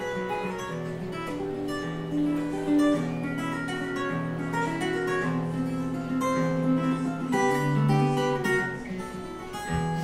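Solo acoustic guitar playing an instrumental passage: a plucked melody over ringing low bass notes, with no singing.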